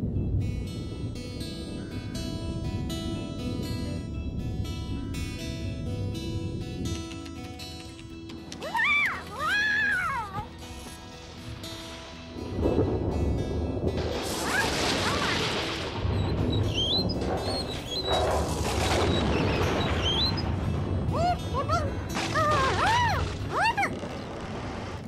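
Background music, then, about halfway through, a long rumble and crash of thunder with a rush of wind that comes back a few seconds later.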